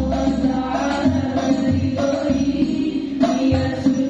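Banjari group performance: several female voices singing an Islamic devotional song (sholawat) together into microphones, with terbang frame drums beating low strokes underneath.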